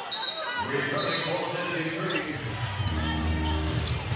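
Live basketball game sound in a large arena: a ball bouncing on the hardwood court over crowd noise, with steady low music tones from the arena system in the second half.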